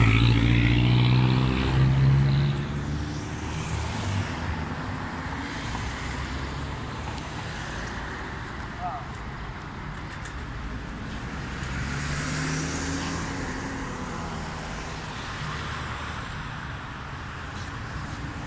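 Road traffic: a motor vehicle's engine passes close by at the start, loudest first and fading over about four seconds. Then steady traffic noise, with another vehicle passing about twelve seconds in.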